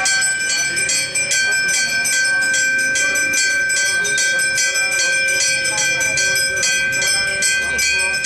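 A temple puja bell rung rapidly and without a break, about four or five strikes a second, its ringing tone hanging on between strikes.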